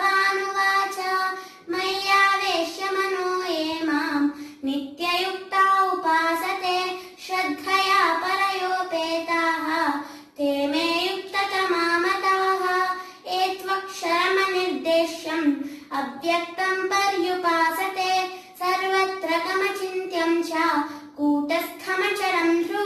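A young girl singing solo and unaccompanied, in long held phrases that bend in pitch, with short breaths between them.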